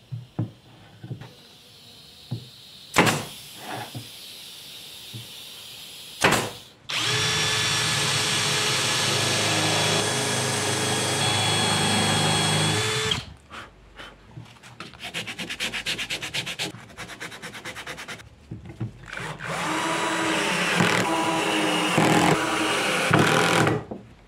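Electric drill with a countersink bit drilling into birch plywood: after a few knocks of boards being handled, the drill runs steadily with a high whine for about six seconds, then comes a stretch of fast even ticking, and a second steady drill run near the end.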